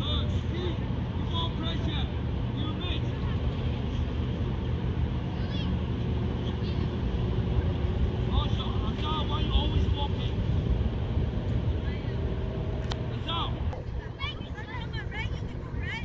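Sports-field ambience: a steady low rumble, with distant children's voices and short calls from the players scattered throughout. One sharp knock about 13 seconds in.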